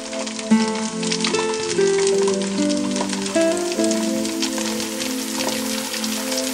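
Whole fish deep-frying in hot oil in a wok: a dense, steady crackling sizzle, under instrumental background music with plucked melodic notes.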